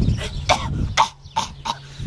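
A woman imitating a cat hacking up a hairball: a run of short, rough coughing and retching hacks, fainter in the second half.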